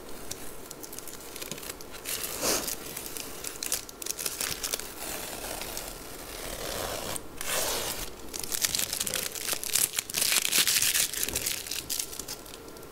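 Peeled-off masking tape being pulled and crumpled up in the hand, crinkling and tearing in several spells, loudest about ten seconds in.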